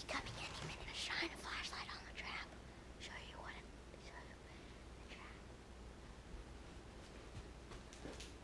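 A boy whispering close to the microphone in short breathy bursts over the first few seconds, then only a few faint whispers over quiet room tone with a steady low hum.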